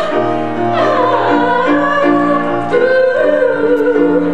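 Singing with instrumental accompaniment, held notes over a steady backing.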